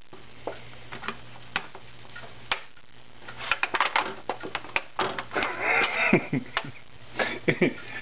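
Disposable aluminium foil pan crinkling and clicking as hands press and roll stuffed fish fillets in it: scattered sharp clicks, few at first and much busier in the second half.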